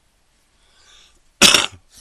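A man coughs once, sharply and loudly, about one and a half seconds in, just after a faint intake of breath.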